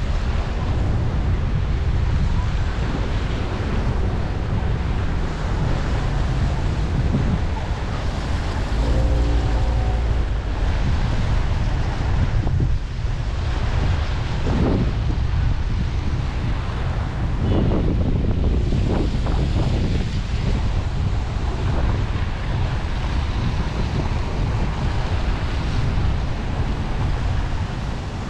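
Wind in a snowstorm buffeting the microphone: a loud, steady low rumble.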